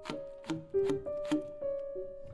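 Grand piano striking short notes and chords about every half second, under a wind instrument holding one long note with a slight vibrato.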